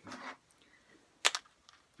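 Fingerboard clacking against a hard surface: a brief soft rustle at the start, then two sharp clicks in quick succession a little past a second in.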